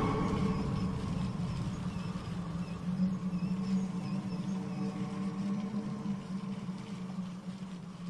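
A quiet, steady low hum with a fainter higher tone over it and a few faint, short high chirps.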